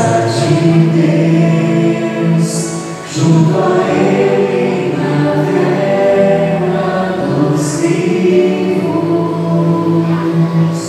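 A group of voices singing the refrain of a responsorial psalm in long held notes, with a short break for breath about three seconds in.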